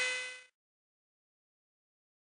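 The steady multi-tone machine whine of a Phlatprinter MKII CNC cutter fades out within the first half second, followed by dead silence.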